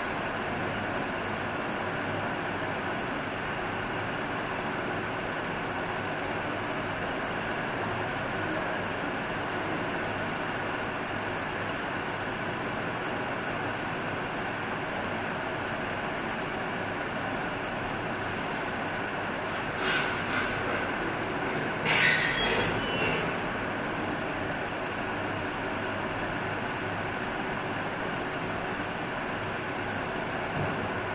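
Steady background noise with no speech. About two-thirds of the way in come two brief, sharper sounds a couple of seconds apart.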